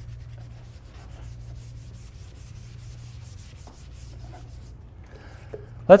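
Felt whiteboard eraser rubbing across the board in quick back-and-forth strokes, about five a second, stopping about three-quarters of the way through.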